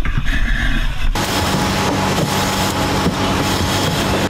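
A muffled low rumble for about the first second, then a loud, steady engine drone with a broad hiss over it.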